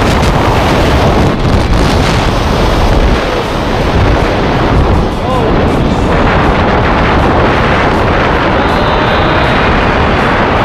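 Strong wind rushing over the camera microphone through the end of a tandem freefall and the parachute opening; the rush carries on at a similar level under the open canopy.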